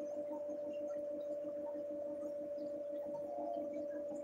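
Steady electric hum of a reef aquarium's running equipment, one even tone with a faint regular throb beneath it.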